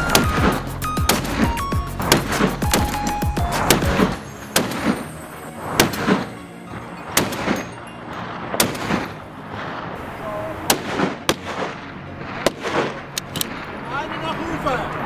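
Music with a busy beat, which drops back after about four seconds. From there a series of single long-range rifle shots cracks out about a second apart over the quieter music.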